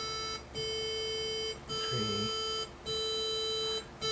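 Roland JX-3P synthesizer with the Kiwi-3P upgrade playing the same note, an A near 440 Hz, four times in a row with both oscillators set to square waves. Each note is held about a second with a short break between, as the synth steps from voice to voice so the tuning between oscillator 1 and oscillator 2 can be checked on each voice.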